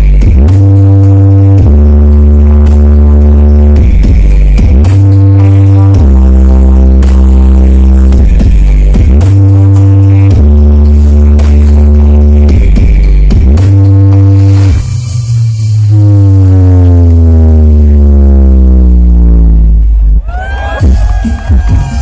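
Electronic dance music played very loud through the Aeromax wall-of-speakers sound system, dominated by heavy bass notes that change about every two seconds. About fifteen seconds in, a long falling pitch sweep drops the bass down; it breaks off near twenty seconds.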